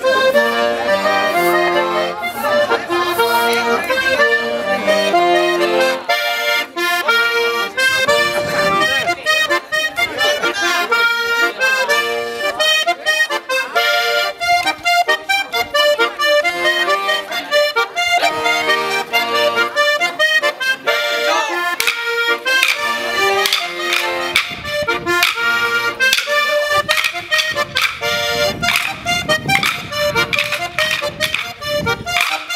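Button accordion playing a lively traditional dance tune, with sharp clacking strokes mixed into the music at times.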